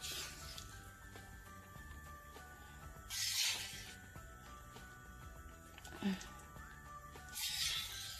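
A spoon scraping soft white cheese out of a container, twice in short hissy scrapes, with a soft knock between them as the cheese is dropped onto shredded cheese in a glass bowl. Faint music plays underneath.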